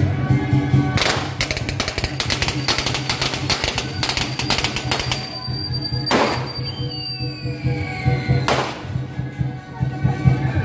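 Temple-procession music with steady held notes, overlaid by a quick run of sharp cracks through the first half and three loud bangs that ring on, about a second in, six seconds in and near the end.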